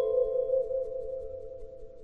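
Struck bell-like chime tones ringing on and slowly fading away, the main tone wavering in a slow, even pulse.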